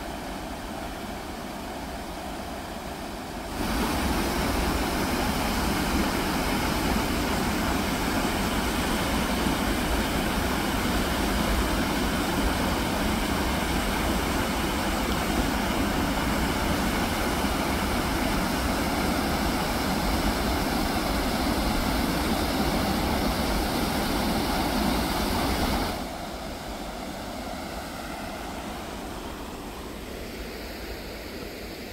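Steady rush of a waterfall's falling water. It turns abruptly louder a few seconds in and drops back a few seconds before the end.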